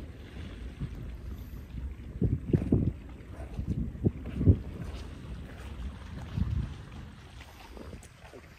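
Wind buffeting the microphone, a low rumble that swells in several stronger gusts through the middle.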